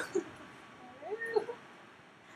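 A woman's short, high, wavering meow-like vocal squeak, fairly quiet, about a second in, rising and then falling in pitch.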